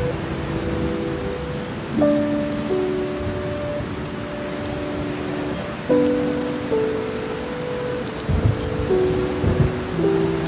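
Slow, sad piano chords, each held for a few seconds before the next, over a steady hiss of heavy rain. Two low thumps come near the end, heard as thunder or a beat's bass hit.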